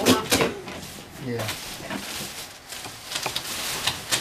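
Scattered light clicks and knocks of a child handling a plastic pedal car, under faint voices of people in the room.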